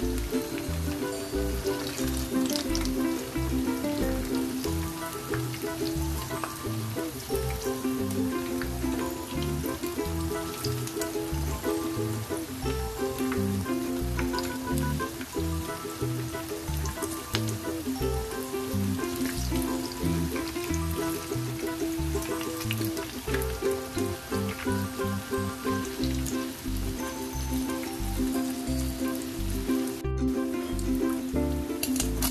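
Corn fritters sizzling and crackling as they fry in hot oil in a pan, under background music with a steady beat.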